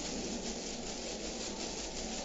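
Steady rubbing and rustling as gloved hands work at the plastic end cap of a laser printer toner cartridge.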